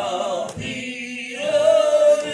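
A gospel song sung with long held, wavering notes over acoustic guitar, the singing growing louder on a held note near the end.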